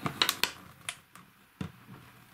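Sharp clicks and taps of a metal steelbook case knocking against a clear acrylic display stand as it is fitted into the stand's slot: a quick cluster at the start, then single clicks about a second and a second and a half in.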